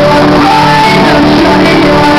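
Live pop rock band playing loud: a male lead singer belts long held notes into the microphone over electric guitar and drums.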